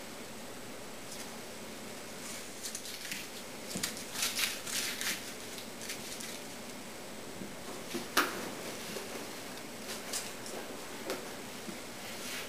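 Polyethylene vacuum-bag sheeting rustling and crinkling in scattered bursts as it is handled and pulled back from a glued bent-plywood lamination, with a single sharp knock about eight seconds in.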